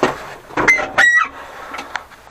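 A chicken calling twice: a short call, then a longer one that drops in pitch at the end. A knock sounds right at the start.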